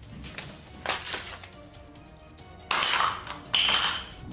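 Background music, then about three seconds in a sudden loud clatter, like objects being knocked off a table and hitting the floor.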